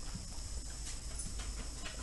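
Faint taps and light scratching of a stylus writing on a tablet, a few small scattered clicks over a steady low hum.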